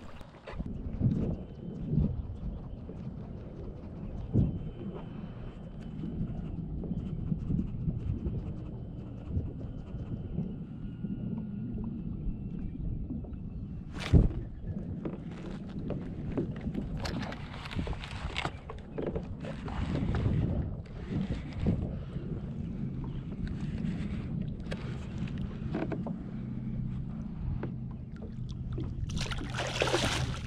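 Water slapping and sloshing against a plastic kayak hull over a steady low hum, with one sharp knock about halfway. Just before the end comes a louder splash: a hooked fluke (summer flounder) thrashing at the surface beside the kayak.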